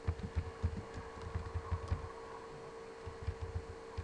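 A steady low hum with a scatter of irregular soft low thumps, heard over a video call's audio line.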